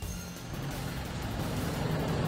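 Outdoor street ambience: a low, steady rumble with faint music, slowly growing louder.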